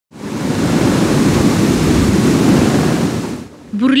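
Reservoir outflow water rushing and churning over a weir, a loud, steady noise of falling water that cuts off suddenly about three and a half seconds in. A voice begins just after.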